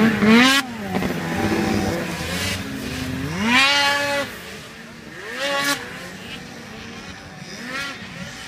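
Snowmobile engines revving as they race, their pitch climbing and dropping with each throttle change. A strong rev climbs about three and a half seconds in, after which the engines sound fainter and farther off.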